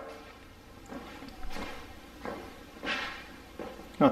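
A few faint, soft footsteps on a bare concrete floor, irregularly spaced, with some camera handling noise.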